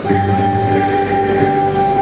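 Live folk ensemble music: a chord held steadily by the players, with a shaken rattle hissing over it.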